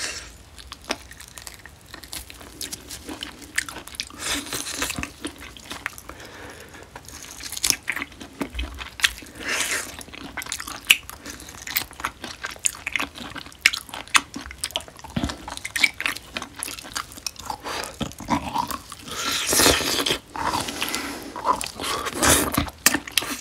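Close-miked biting and chewing of marinated grilled beef short ribs (LA galbi), a dense run of small clicks and mouth sounds, growing louder for a couple of seconds near the end.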